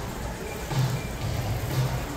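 Busy supermarket ambience: a loaded shopping cart rolling over a hard floor with a low thud about once a second, over a general hubbub of shoppers.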